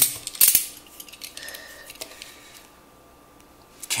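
A snap-off utility knife worked at the taped top of a cardboard box: two short sharp scraping clicks in the first half-second, then only faint small handling sounds.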